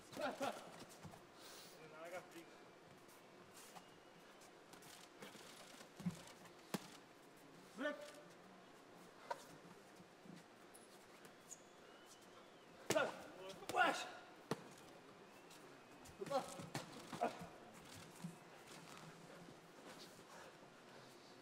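Occasional dull thuds of boxing gloves landing, with short shouts from ringside over a quiet arena; the loudest shouts come around the middle of the stretch.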